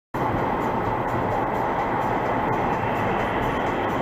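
Steady road and tyre noise with engine rumble inside a car's cabin at highway speed, as picked up by a dash camera's microphone.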